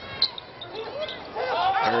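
On-court sounds of a basketball game in play, heard over the arena's murmur: one short, sharp, high sound about a quarter second in, like a sneaker squeak or ball strike on the hardwood. A commentator's voice comes in near the end.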